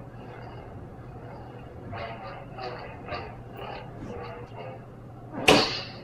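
Nano-Biscotte lightsaber sound board playing its Corellian sound font through the hilt's speaker: a few faint sounds, then a loud ignition sound about five and a half seconds in, sharp at the start and falling in pitch, as the blue blade lights.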